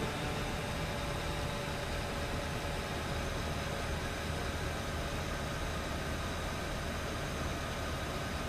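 A parked SUV's engine idling steadily, a continuous low hum under an even hiss.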